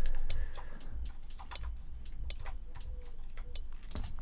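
Dry hi-hat and cymbal loop playing back from a DAW with no echo effect on it: short, crisp hi-hat ticks about four a second, evenly spaced.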